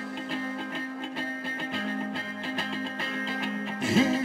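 Live rock band music led by an electric guitar playing a picked pattern in a steady rhythm over held low notes. A loud hit comes near the end.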